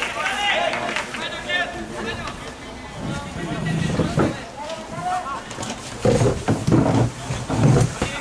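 Spectators talking close by, with several loud low rumbles on the microphone in the second half.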